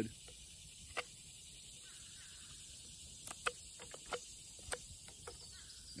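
Scattered sharp little clicks and taps from a knife and a freshly debarked wooden branch fork being handled and turned over in the hands, about ten in all, the loudest about a second in and near the middle.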